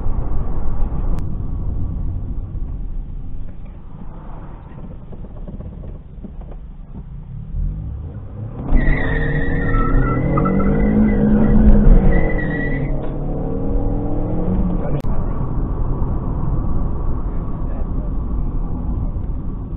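Car road and engine noise, low and rumbling. About nine seconds in, a car engine suddenly gets loud and revs up and back down over about four seconds, with a high steady whine above it.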